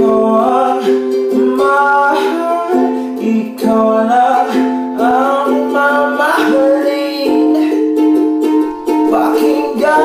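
Ukulele strummed through a chord progression while a young man's voice sings a slow love song over it.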